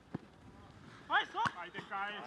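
Two thuds of a football being kicked on a grass pitch: a dull one just after the start and a sharper, louder one about a second and a half in, with players shouting.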